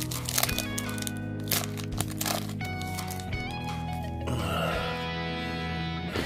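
Trading-card pack wrapper crinkling and crackling as it is torn open, mostly in the first half, over background music.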